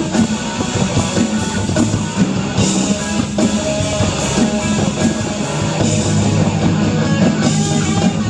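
Live rock band playing: electric guitar, bass guitar and drum kit, with regular cymbal hits running through the music.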